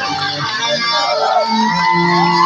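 Amplified live band music from a concert stage, heard from within the crowd: electric guitar playing held notes. The deep bass drops out right at the start.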